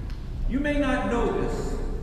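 Only speech: a man says one short phrase over a low, steady hum.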